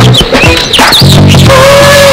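Background music from the film score. A low bass line drops out about half a second in while quick high warbling glides sound, then a long held note enters near the end.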